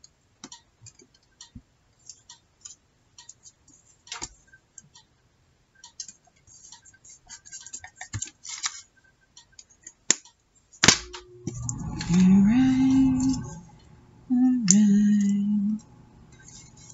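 Paper scraps and a glue stick handled on a cutting mat: light rustles and small scattered clicks, then one sharp tap about eleven seconds in. After that a woman hums a few long, steady notes, with a step up in pitch between them.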